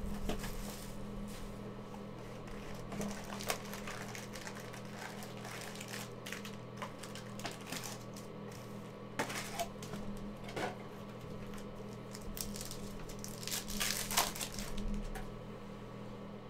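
Plastic shrink-wrap and foil trading-card packs being handled and torn open: scattered crinkling and rustling, busiest about nine to eleven seconds in and again near the end, over a steady low hum.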